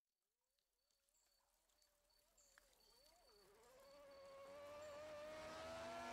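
A recording of a car engine fading in from silence as the intro to a lofi track: one pitched engine note that wavers up and down at first, then holds steadier and rises slowly in pitch as it grows louder.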